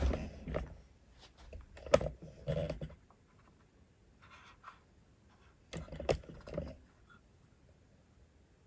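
Handling noise: two brief spells of scraping, rustling and knocks, each with one sharp click, as the opened metal-cased antenna controller is moved about in the hand.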